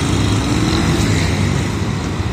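Street traffic: small engines of a motorcycle and auto-rickshaws running steadily over a general road noise.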